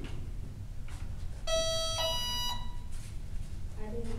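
Electronic two-note startup beep, a lower tone stepping up to a higher one, from a radio-controlled model airplane's electronics as they are powered up after the transmitter.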